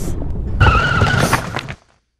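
A low rumble, then a loud screech with a slightly wavering whistle-like tone running through it, cut off abruptly near the end.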